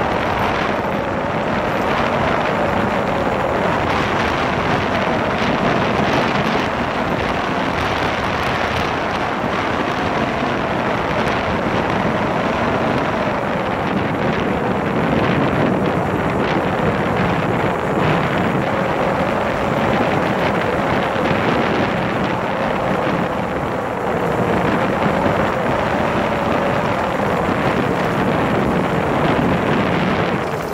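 Motorcycle engine running at riding speed, its pitch rising and falling gently, under heavy wind noise on the microphone.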